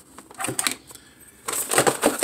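Cardboard action-figure packaging being handled: a few light clicks and taps, with more of them near the end.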